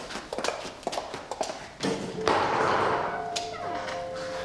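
Hard-soled footsteps on a hard floor, about two steps a second, walking away. About two seconds in, a louder, steady rush of noise takes over.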